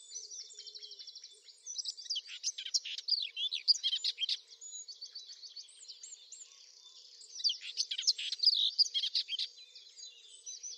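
Birdsong: several birds chirping and trilling, with fast repeated notes underneath and two louder bursts of quick, sweeping song, the first about two seconds in and the second at about seven seconds.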